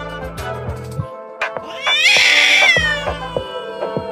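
A domestic cat's single long meow, rising then falling, about two seconds in, over background music.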